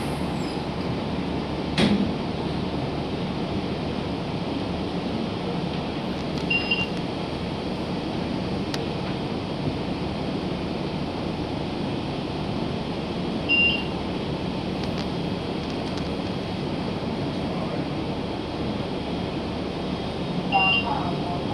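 Steady engine and road noise inside a 2018 Gillig Low Floor transit bus under way. There is a sharp knock about two seconds in, and short high beeps about a third and two-thirds of the way through.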